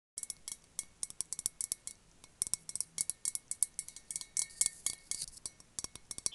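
Fingernails tapping on a metal water bottle: many quick, light, irregular taps with a faint metallic ring.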